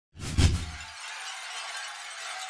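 Glass-shattering sound effect: a sudden low boom and crash about half a second in, followed by the tinkle of falling shards.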